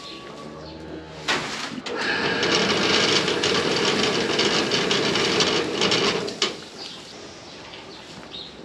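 Ground feed pouring out of a feed cart into a wheelbarrow: a steady rushing sound that starts about two seconds in and cuts off after about four seconds.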